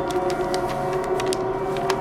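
A sustained film-score drone of several held tones, with scattered sharp clicks over it.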